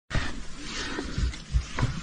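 A bear growling, low and rough, with several low thumps.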